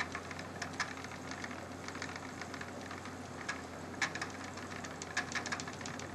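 Wooden spinning wheel running under steady treadling, with a constant low hum and light, irregular clicks from the moving wheel parts.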